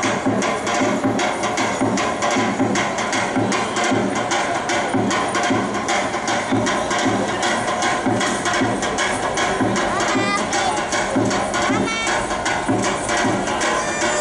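Macedonian folk dance music with a fast, even percussion beat driving a dense instrumental texture.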